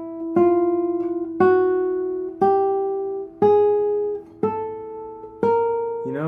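Nylon-string classical guitar playing single plucked notes slowly, about one a second, each a semitone above the last: an ascending chromatic scale, every note left ringing into the next.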